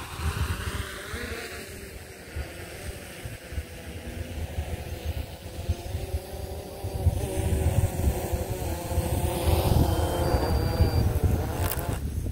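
DJI Mavic 3 quadcopter's propellers buzzing in flight, a wavering hum that grows louder in the second half as the drone is brought down to land. Wind gusts rumble on the microphone throughout.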